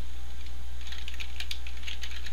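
Computer keyboard typing: a quick run of keystrokes starting about a second in, over a steady low hum.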